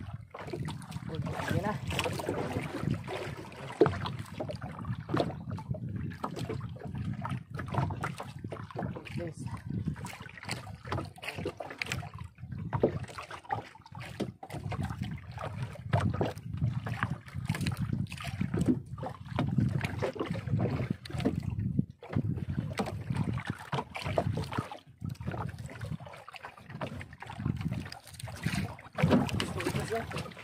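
Wind buffeting the microphone and water slapping against the hull of a small outrigger boat, uneven and gusty throughout, with scattered knocks.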